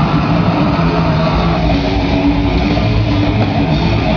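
A live grindcore band plays loud, distorted electric guitars over drums, heard from within the crowd. The sound is dense and unbroken throughout.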